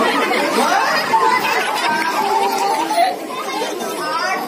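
Several voices talking over one another: stage dialogue mixed with chatter, echoing in a large hall.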